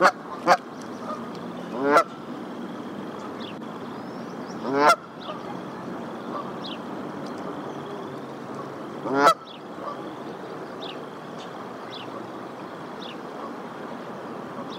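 Canada geese honking off-camera: two quick honks at the start, then single loud honks about two, five and nine seconds in.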